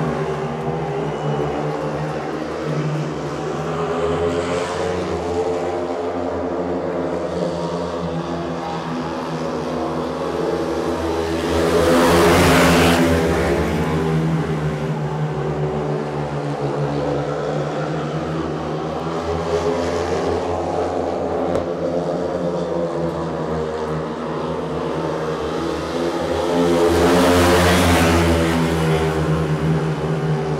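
A pack of four speedway motorcycles racing, their 500 cc single-cylinder methanol engines making a steady many-toned drone. The sound swells loudly twice, about fifteen seconds apart, once each lap as the bikes pass close by.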